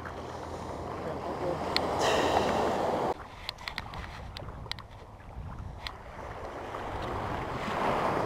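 Small waves washing in the shallow surf, with wind buffeting the microphone. The wash swells, cuts off suddenly about three seconds in, then slowly builds again, with a few light clicks along the way.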